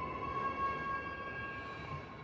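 Subway train sound in a station from a film soundtrack: a steady high whine of several tones over a low rumble, slowly fading.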